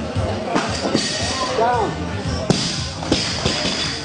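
Barbell loaded with rubber bumper plates dropped from overhead onto the lifting platform after a completed jerk: one sharp bang about two and a half seconds in, the loudest sound, over voices and a cheer in a large hall.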